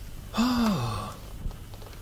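A man's single breathy vocal exclamation, a wordless sigh of amazement, starting about a third of a second in and falling in pitch over under a second.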